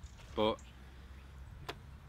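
A man says a single word; under it runs a faint, steady low rumble, and one short click comes near the end.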